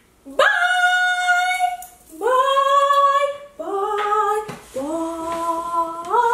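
A woman's voice singing long wordless notes, four in turn, each sliding up at its start and each pitched lower than the one before.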